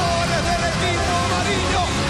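Several people shouting and cheering over background music with a steady beat.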